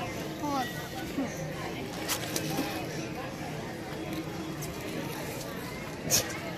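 Indistinct voices of children and other people, with a couple of brief clicks about two seconds in.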